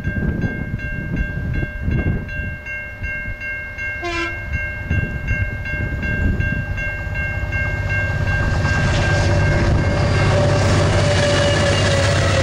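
Diesel locomotives hauling a container freight train approach, their engine rumble growing from about eight seconds in until the train is passing at the end. Throughout the first ten seconds a ringing signal of several tones pulses steadily about three times a second, and a short blip of sound comes about four seconds in.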